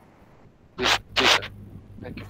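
Two brief rustling scrapes about a third of a second apart, picked up by a participant's microphone on a video call.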